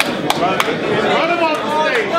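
Camera shutters clicking, a quick run of sharp clicks about three a second in the first half second, over people talking in a crowded room.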